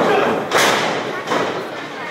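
Wrestlers' bodies thudding onto the ring canvas: two heavy thuds close together at the start, then a lighter one a little over a second in.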